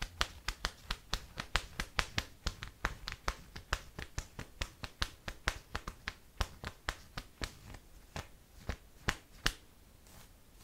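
Long acrylic fingernails tapping on the elastic underband of a sports bra: a quick, even run of sharp taps, about five a second, that thins out and stops just before the end.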